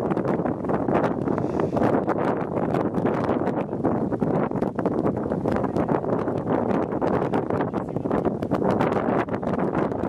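Strong wind buffeting the camera microphone on an exposed high platform: a steady rushing noise broken by constant rapid crackling gusts.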